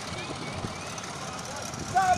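Faint, distant voices of people chatting over a steady background hiss.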